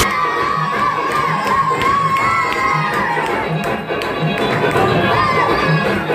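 A crowd of partygoers cheering and shouting, with long high-pitched drawn-out whoops, over a steady dance-music beat.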